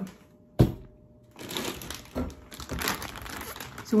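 A sharp thump, then plastic packaging crinkling and rustling unevenly as it is handled.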